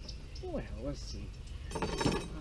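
A few brief metal clinks and rattles near the end as a wire grill grate is handled, after a short wordless vocal sound.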